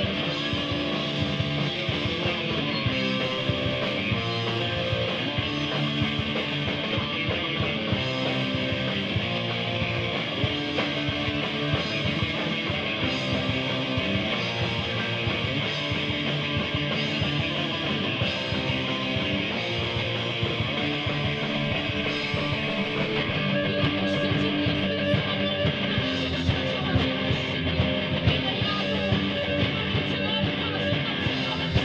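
Live rock band playing: amplified electric guitars in a dense, unbroken wall of sound, with sharper beats standing out over the last several seconds.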